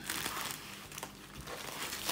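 Thin clear plastic magazine wrapper crinkling continuously as hands pull a magazine out of it.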